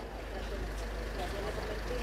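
A vehicle engine running with a low, steady rumble, with faint voices in the background.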